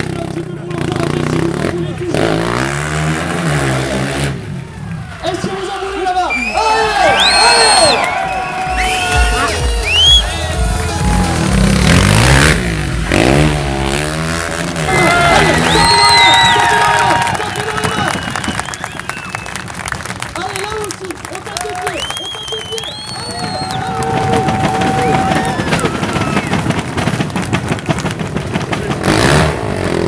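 A sport quad's engine revving up and falling back, twice: a few seconds in and again about halfway. Music with vocals plays throughout.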